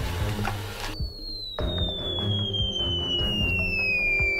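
Background music with a steady beat, and a noisy rush in the first second. Then a single long whistle-like tone that glides slowly downward, a cartoon 'falling' sound effect.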